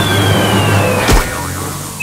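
Cartoon sound effects: a long falling whistle over a loud whooshing rush, with a single thump a little past a second in.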